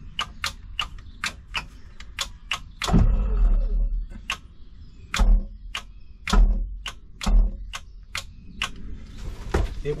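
Rapid, uneven clicking from the boat's tilt-and-trim switch and relay, with four short bursts of the new OMC stringer tilt motor running and straining in between. It is fed from a jump pack too weak to supply the current, so the outdrive only lifts part way.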